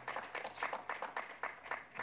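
A few people clapping, several irregular claps a second.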